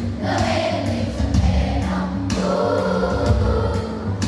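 Children's choir singing long held notes over instrumental accompaniment, with a deep bass line and occasional percussive beats underneath.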